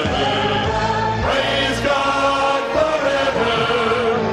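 Male vocal ensemble of ten singing sustained chords in harmony through handheld microphones.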